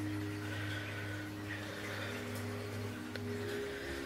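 Quiet background music of long held notes over a low steady hum, with one faint click about three seconds in.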